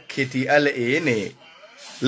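A man speaking a short phrase, then a brief pause.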